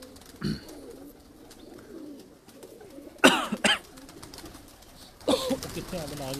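Domestic pigeons cooing, low and repeating. Two louder, short calls cut in, about three seconds in and again near the end.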